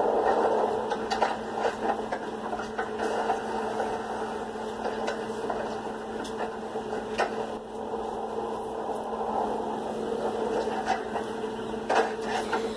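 A steady hum with muffled background sound and a few faint clicks.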